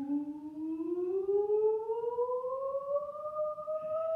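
A woman's voice holding one long note that slides slowly and evenly upward in pitch, an anticipation-building 'oooo'.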